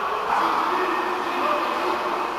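Indistinct shouting and calling voices overlapping, echoing in a large indoor pool hall.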